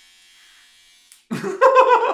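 Electric hair clippers buzzing faintly, then, just over a second in, loud laughter that drowns them out.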